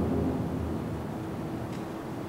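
A deep low rumble from a film trailer's soundtrack over the room's loudspeakers, fading away over the first second or so, with a faint steady hum underneath.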